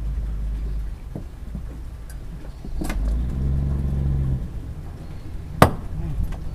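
A cleaver striking through a sembilang (eel-tail catfish) onto a boat deck: a lighter chop about halfway through and a sharp, loud chop near the end. A low engine rumble runs underneath, swelling into a steadier hum for about a second in the middle.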